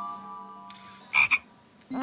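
The last notes of a chime music cue fade away, then a comic sound effect gives two quick croaks just past the middle.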